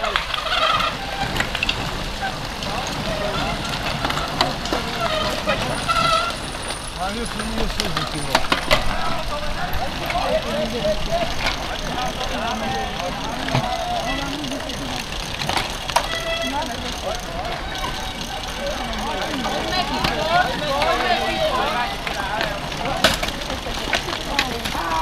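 Spectators shouting and calling out as a pack of cyclocross riders passes close by on a dirt track. Under the voices run the noise of bicycle tyres on dirt and scattered sharp clicks from chains and gears.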